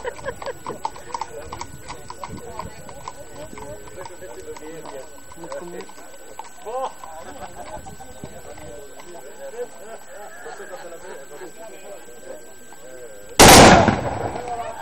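Horses' hooves clip-clopping on the road amid crowd voices, then, near the end, one very loud crash lasting about half a second: a volley of black-powder muskets fired together by the marchers, the salute they call a décharge.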